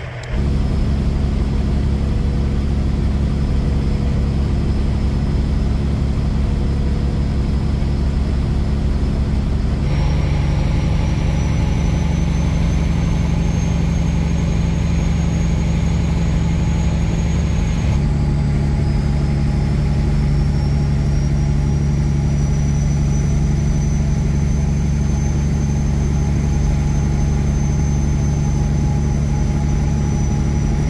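Semi truck engine and road noise heard from inside the cab while cruising on the highway: a steady low drone, its pitch shifting abruptly twice, about ten and eighteen seconds in.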